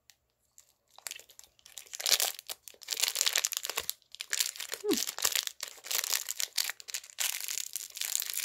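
Clear plastic candy wrapper crinkling and crumpling in the hands in irregular bursts, starting about a second in.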